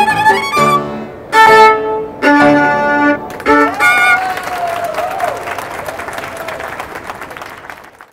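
Violin and piano end a classical piece with a series of loud, separated final chords. From about four seconds in, an audience applauds, and the clapping fades away near the end.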